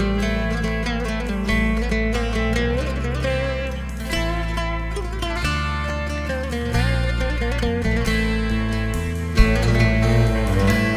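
Acoustic ensemble playing the instrumental opening of a Turkish song: plucked lute and guitar lines over cello and deep sustained bass notes that change every second or two.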